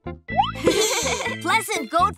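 Children's cartoon intro music: a rising glide sound effect, then a bright sparkly shimmer with cartoon character voices calling out over the tune, one with a bleating goat-like quality.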